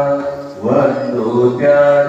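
A voice singing slow, held notes in a chant-like melody, dipping briefly about half a second in.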